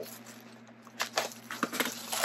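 Plastic bubble wrap crinkling and crackling as it is pulled open by hand, in a few short bursts starting about a second in.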